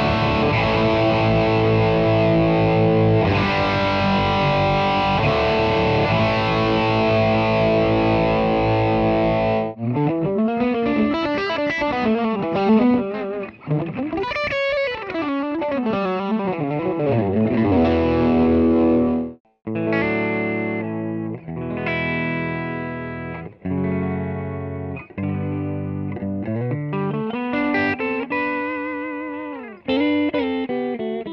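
Gibson Les Paul Standard electric guitar played through a Roland Blues Cube amp set to its New York Blues tone capsule, an EL84 British-combo voicing, with a distorted tone. For about the first ten seconds it plays sustained chords, then single-note lead phrases with string bends and vibrato.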